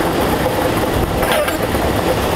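Lottery ball-draw machine running steadily, a loud mechanical noise with its plastic balls churning in the clear acrylic chambers.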